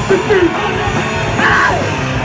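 Live rock band playing loudly, electric guitars and drums, with yelled vocals coming in twice.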